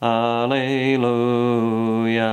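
A man's unaccompanied voice chanting one long, steady held note, with a change of vowel about half a second in.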